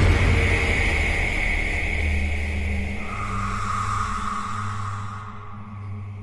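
Outro logo sound effect: the long tail of a sudden impact, a deep rumble with a noisy wash that slowly fades, with a faint steady tone joining about three seconds in.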